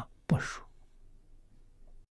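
A short breathy vocal sound from an elderly man about a third of a second in, then faint room tone.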